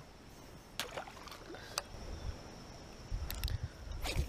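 Faint handling of fishing tackle: a few short clicks and knocks about a second in, near two seconds, and a quick cluster near the end, over a low steady rumble.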